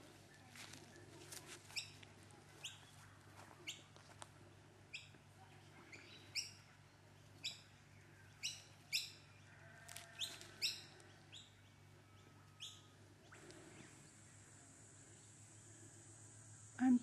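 A bird repeating a short, rising chirp about once a second, faint against quiet garden background. A steady high hiss, typical of an insect, comes in near the end.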